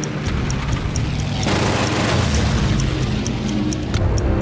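Film-trailer score: a sustained low drone under a steady clock-like ticking, about three ticks a second, with a rushing noise that swells about a second and a half in.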